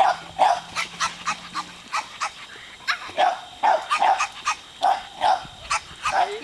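A dog barking over and over in quick, even succession, about two to three short barks a second.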